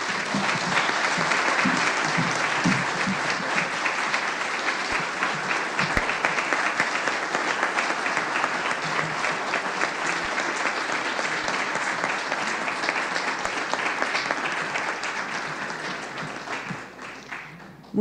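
Audience applauding: dense, steady clapping that starts at once and fades out near the end.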